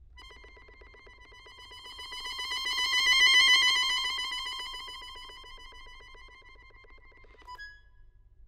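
Chromatic button accordion holding a single high note with a fast flutter in it. The note swells to loud about three seconds in, then fades away and breaks off just before the end.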